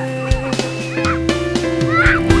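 Music with long held notes, with short high-pitched calls scattered over it, the loudest near the end.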